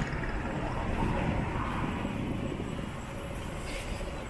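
A steady low rumble of vehicle noise, swelling a little about a second in and easing toward the end.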